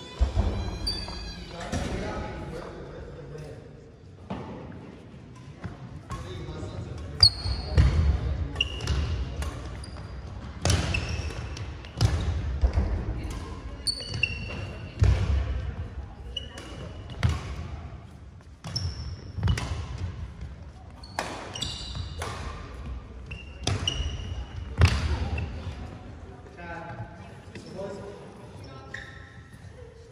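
Badminton doubles rally on a hardwood gym floor: sharp racket hits on the shuttlecock every second or two, sneaker squeaks and heavy footfalls as the players move, in a large echoing gym.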